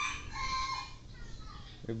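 A bird calling in the background: one drawn-out pitched call that drops in pitch near its end.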